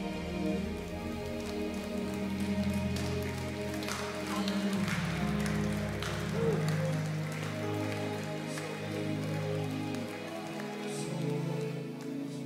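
Soft, slow worship music: held keyboard chords that change to a new chord about five seconds in.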